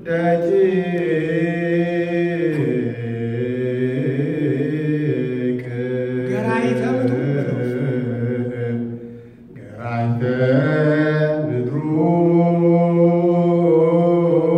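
A group of men chanting Ethiopian Orthodox liturgical chant (zema) together, the leading voice amplified through a microphone. Long held notes move slowly from pitch to pitch, with a brief pause for breath about two-thirds of the way through before the chant resumes.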